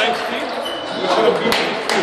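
Celluloid-type table tennis ball clicking sharply off bats and the table a few times, over voices in the background.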